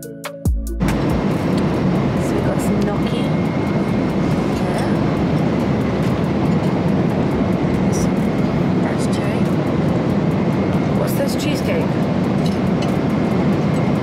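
Steady airliner cabin noise in flight, a loud, dense low rumble, taking over as background music cuts off under a second in. A few light clicks and knocks from the meal tray sit on top.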